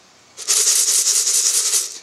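Cracked hard white wheat grains rattling against metal: a steady gritty hiss that starts about half a second in and stops just before the end.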